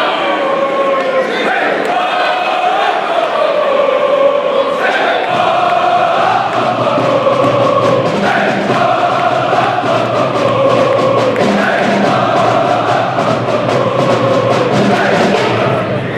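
A large gym crowd chanting in unison, many voices holding and shifting long notes together. About five seconds in, a drumline joins with a steady beat under the chant.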